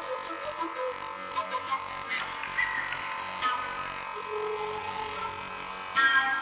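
Contemporary music for flute and electronics: several held high tones overlapping, with a few sharp accented attacks along the way and a louder entry right at the end.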